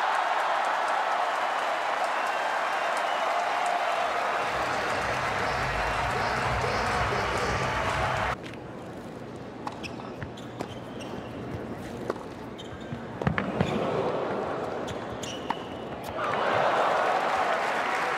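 Arena crowd cheering and applauding after a tennis point, cut off abruptly about halfway through. Then, in a quieter hall, a rally of tennis ball strikes and bounces as sharp separate pops, two of them close together near the end of the rally, before the crowd cheers and applauds again.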